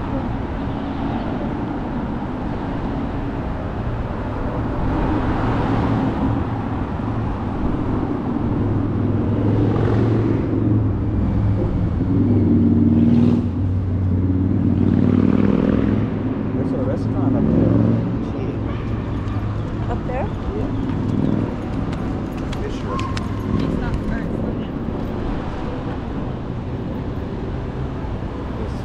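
Street traffic: a steady low engine rumble swells louder through the middle few seconds as a vehicle passes, with people's voices in the background.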